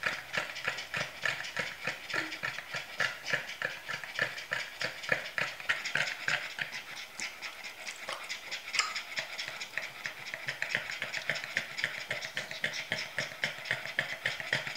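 Boston terriers panting hard after exercise, short breaths repeating in a fast, steady rhythm.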